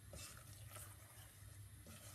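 Faint stirring of bubbling melted sugar and golden syrup with a wooden spoon in a stainless steel saucepan, with a few soft scrapes, over a low steady hum.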